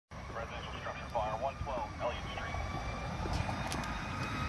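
A voice on a fire-dispatch radio scanner, heard in short phrases during the first two seconds, over a low steady rumble.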